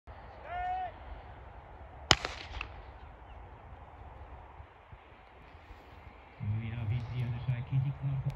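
A short call, then a single sharp starting-pistol crack about two seconds in with a brief echo, starting a 150 m sprint. Low voices start up near the end.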